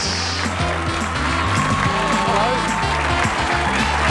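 Game-show theme music with a steady, repeating bass line, playing the host on, with the studio audience applauding under it.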